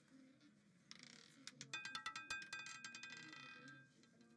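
A roulette ball clattering over the wheel's frets and dropping into a pocket, heard faintly: a rapid run of sharp clicks with light metallic ringing, starting about a second and a half in and thinning out near the end.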